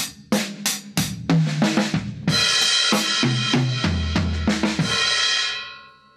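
Acoustic drum kit played through a Shure MV51 USB microphone on its band-recording preset and heard over a Zoom call. A run of quick strikes and tom hits falls in pitch, then the cymbals ring with deep drum hits beneath and fade out near the end.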